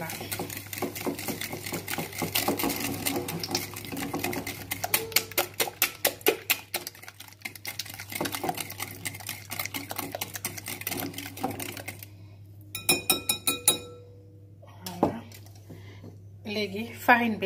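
Wire whisk beating eggs and sugar in a glass bowl, its wires clicking fast and steadily against the glass. The beating stops about twelve seconds in, followed by a few more taps of the whisk on the bowl.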